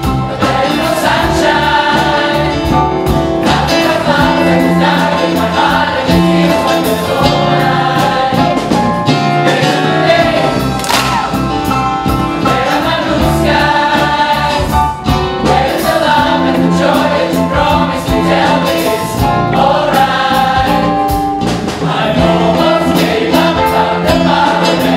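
Large mixed choir of men, women and children singing an upbeat gospel song in full voice, over a steady beat.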